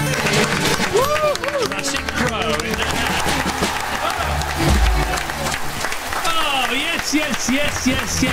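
A live band's song ends on a ringing chord with bass, while people in the studio whoop, cheer and clap, and talking starts near the end.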